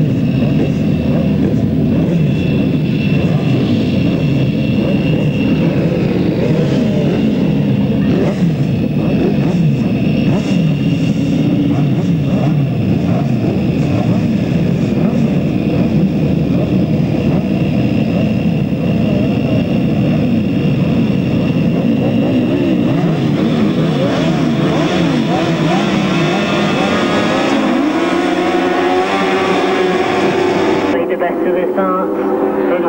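Several grasstrack racing sidecar outfits' engines running together at the start line, their notes overlapping and being blipped. In the last few seconds the revs climb and the engines rise in pitch as the outfits pull away from the start.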